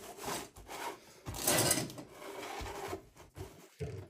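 Card stock sliding and scraping against a paper trimmer's bed and clear plastic paper clamp, a series of short rough rubs with the longest and loudest about a second and a half in.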